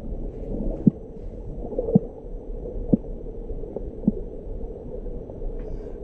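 Muffled, steady rumble of water picked up by a lost GoPro Hero 7's microphone as it lies in the dark, fallen into the rocks below a waterfall, with four faint knocks about a second apart.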